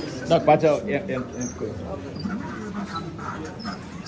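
Several people's voices talking in a crowded room, with one loud, high exclamation or cry about half a second in.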